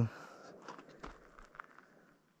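A few faint, distant bangs, one with a low rumble about a second in, that sound like gunshots.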